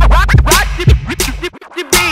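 DJ turntable scratching over a hip hop beat with heavy bass: quick back-and-forth pitch sweeps cut between sharp hits. About one and a half seconds in, the bass drops out briefly, leaving only the scratches.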